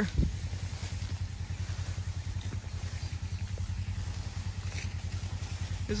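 A small vehicle engine idling steadily, a low, even pulsing throb.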